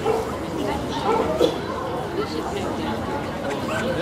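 A dog barking over the chatter of a ringside crowd.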